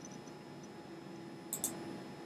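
Computer mouse button clicking, a quick pair of sharp clicks about one and a half seconds in, over faint room tone.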